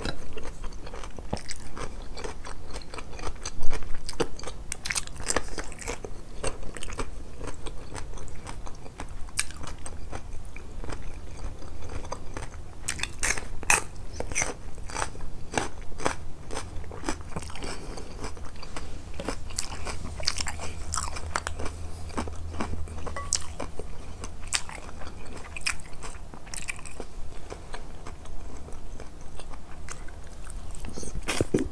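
Close-up crunching bites and chewing of crisp pickled vegetables and a raw green chili pepper, made up of many sharp crunches with the loudest about three and a half seconds in.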